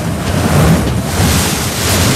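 A loud, sustained rushing whoosh of wind: a film sound effect for a figure flying fast through the trees.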